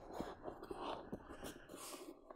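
Faint rustling and light soft knocks from a small white plastic cutting machine being fitted into a padded fabric carry bag.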